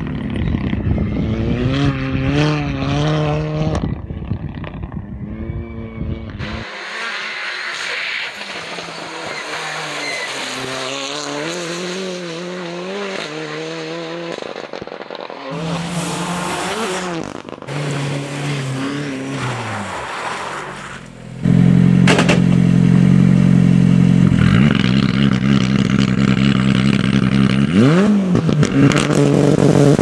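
Abarth 124 Rally's turbocharged four-cylinder engine revving up and dropping back through gear changes as the car drives by, in several separate passes. About two-thirds of the way through it becomes much louder and close, running steadily with a rising rev near the end.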